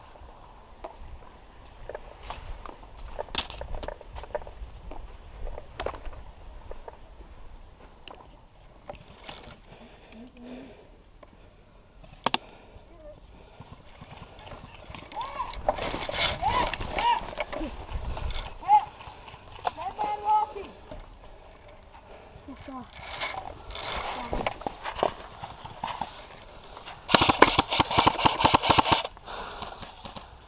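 Airsoft electric rifle firing a full-auto burst of rapid, evenly spaced snaps lasting about two seconds near the end. Before it come scattered clicks and rustling footsteps through vegetation.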